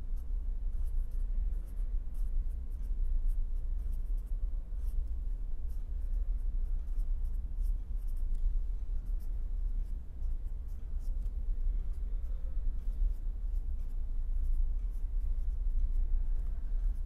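Felt-tip marker writing on paper: many short pen strokes one after another, over a steady low hum.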